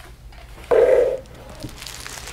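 Cellophane bags of plastic model-kit sprues being handled on a table, with light crinkling of the bags, and one short, dull, louder burst about a second in as a bagged sprue is set down or handled.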